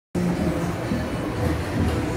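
Low, steady rumbling ambience of a large indoor public space, with music playing faintly underneath.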